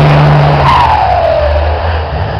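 Race truck's engine running loud, its pitch falling as the revs drop about halfway through.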